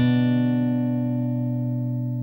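Guitar music: a single low plucked note is struck and left ringing, slowly fading away.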